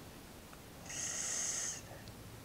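A person breathing out through the nose once, a soft hiss lasting about a second.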